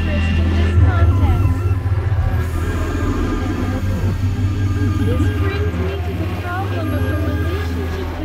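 Experimental electronic synthesizer music: a loud, steady low drone under layered sustained tones, with wavering, gliding pitches weaving over them. The drone steps up slightly about a second in.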